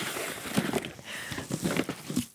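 Paper bag rustling and crinkling as it is handled and lifted out of a cardboard box.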